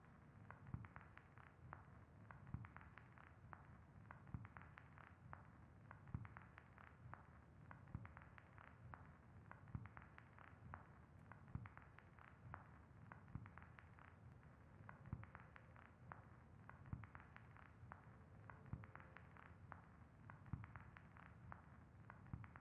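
Near silence: quiet room tone with faint, irregular light ticks, several a second.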